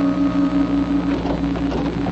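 A sustained bell-like musical tone with a fast waver, a radio-drama scene-change music cue, dying away about a second in over a low steady hum.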